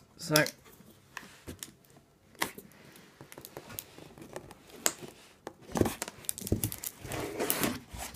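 Cardboard carton being handled while a heavy plastic monster box of silver coins is worked loose and lifted out: cardboard rustling and scraping with scattered clicks and knocks, the rustling denser and louder for the last two seconds or so.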